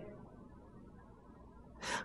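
Faint room tone during a pause, then a man's quick intake of breath through the mouth near the end.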